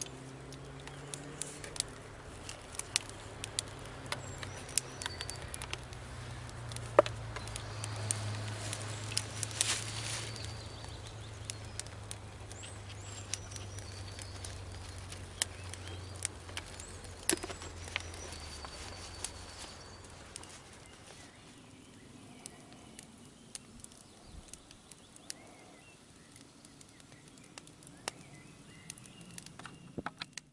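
Freshly lit kindling on top of an upside-down campfire crackling, with many sharp, irregular pops as it catches. A low steady hum lies underneath and fades out about two-thirds of the way through.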